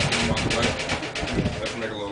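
Stacked plastic bread trays on a wheeled dolly rattling and knocking as they are handled, a quick run of clicks and clatters, with muffled voices mixed in.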